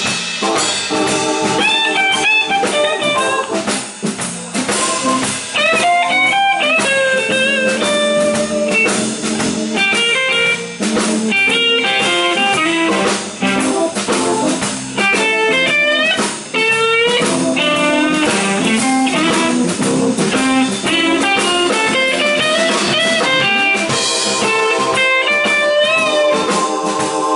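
Live blues band: an electric guitar solo, its notes bending and sliding in pitch, over a drum kit.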